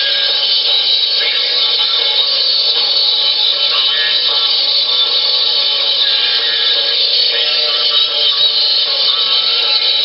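A song played from an iPod through a voice changer module and out of its small speaker, its pitch shifted into a shrill, buzzy, high-pitched tone. It runs steadily and loud, with most of the sound up high.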